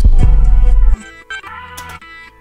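Trap beat playing back from the producer's session, with a heavy 808 bass under a pitched-up melody sample. About a second in, the 808 and drums cut out and only the melody carries on, much quieter, as the beat ends.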